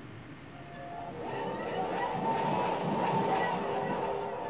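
Electronic sound effects from a 1960s black-and-white science-fiction TV soundtrack: a droning mix of several held tones over a low rumble that swells louder from about a second in.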